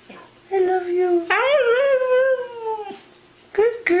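Husky vocalizing in a long, wavering howl-like "talk" that jumps up in pitch about a second in and trails off near three seconds. A second call starts just before the end. This is the dog answering her owner's repeated "I love you" with her own howling "I love you".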